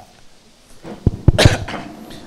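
Someone coughing close to a microphone about a second in, with a few sharp thumps, as the microphone passes to the next speaker.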